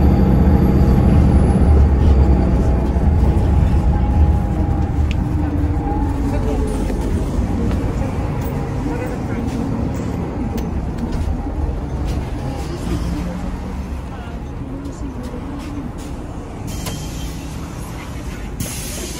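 Inside a moving city bus: engine and road rumble, loudest at first and dying away gradually over the stretch, with passengers talking in the background and a short hiss near the end.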